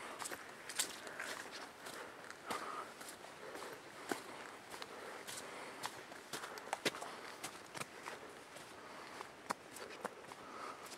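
Faint footsteps of one person walking on a dirt forest trail, a soft step about once a second.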